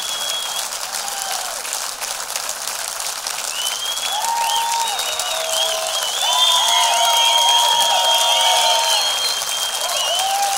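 Studio concert audience applauding, with cheering rising over the clapping from about a third of the way in.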